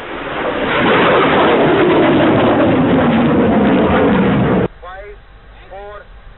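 Solid-fuel rocket motor of a Quick Reaction Surface-to-Air Missile at launch: a loud rushing noise that swells in the first second, with a tone that falls steadily in pitch. It cuts off abruptly about four and a half seconds in.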